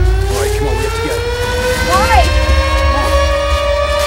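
A rising soundtrack tone with many overtones, climbing slowly and steadily in pitch over a low rumble, with a few short rise-and-fall glides on top.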